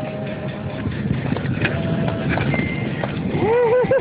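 Golf cart driving over a rough, rocky track, rattling with scattered knocks and short squeaks. A laugh comes near the end.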